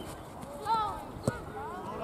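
Children's voices shouting and calling out during a junior football goalmouth scramble, with one sharp knock about a second and a quarter in.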